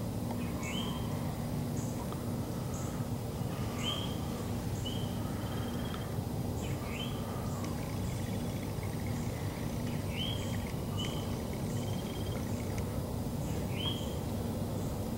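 Woodland ambience: a bird giving short, up-hooked calls again and again, over a steady series of faint, high insect chirps about once or twice a second and a constant low background rumble.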